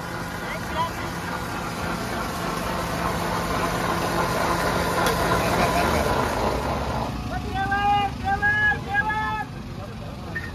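Electric blender motor running steadily while blending grapes into juice, then switched off abruptly about seven seconds in. Near the end a voice calls out several short, high-pitched times.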